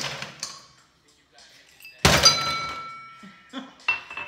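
A glass tumbler set down hard on the stone countertop about two seconds in, a loud clunk followed by the glass ringing for about a second. A lighter knock follows just before the end.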